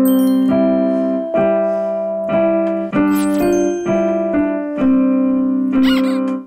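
Digital piano played slowly by a learner: a series of held chords, each new one struck about every half second to a second, with the top note changing from chord to chord.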